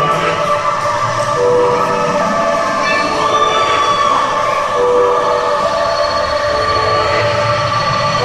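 Live band music heard from the audience: held synthesizer chords, a short note repeating every second and a half or so, and a low bass line, with a few sliding vocal notes over the top.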